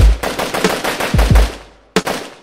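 A burst of machine-gun fire as a sound effect in a rap track's outro, about ten shots a second, fading out over about a second and a half, over deep bass drum hits that drop in pitch. A fresh sharp hit comes near the end.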